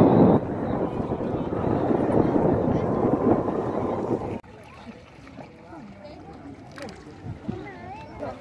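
Crowd of many people talking at once, a dense, loud murmur that cuts off abruptly about four seconds in. After that, only a few fainter scattered voices.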